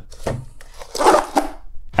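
Foldable foam roller being folded by hand from a flat panel into a cylinder: foam and plastic segments rubbing and handled, with a few short clicks and the loudest rustle about a second in.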